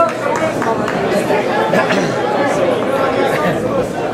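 Crowd of spectators around a fight cage, many voices talking and calling out over one another in a loud, steady chatter.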